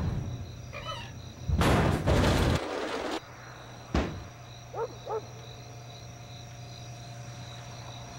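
A snack vending machine being shoved and banged: two heavy, noisy bangs about a second apart, then a single sharp knock. Under it a steady low hum and faint cricket-like chirping.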